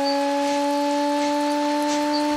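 Alarm horn at a roadblock, set off to signal someone at the blockade. It sounds one long, loud, steady chord of three tones that edges up slightly in pitch.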